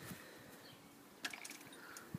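Very faint outdoor ambience, with a few soft clicks about a second and a quarter in.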